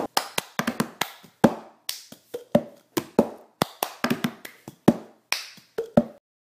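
Cup-game rhythm played with a plastic cup: hand claps alternating with the cup being tapped, lifted and knocked down on a hard surface, a quick run of sharp strikes at about four a second, with no singing.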